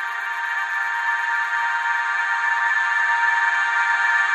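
Electronic music: a sustained synthesizer drone of many held tones, with no beat, slowly growing louder as the closing of a psytrance track.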